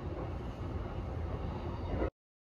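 Steady low rumble and running noise of a moving train, heard from inside the passenger car.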